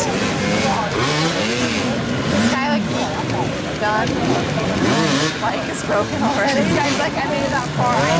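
Several dirt-bike engines revving and blipping at once, their pitches rising and falling over one another as the bikes crawl through an obstacle section.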